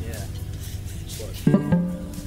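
A low steady hum with a few brief bits of quiet talk, then about one and a half seconds in a loud plucked note from an amplified guitar rings out and fades.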